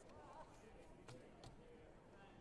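Near silence: faint distant voices in a sports hall, with two light knocks about a second in, a third of a second apart.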